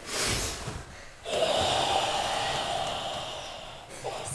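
A karate class breathing forcefully in unison as a drill: a loud, noisy in-breath, then a long out-breath of about two and a half seconds, pushed through the throat, that fades away near the end.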